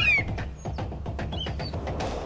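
Atmospheric documentary soundtrack: a low steady drone with light clicking percussion, and a few short bird chirps, one near the start and another about a second and a half in.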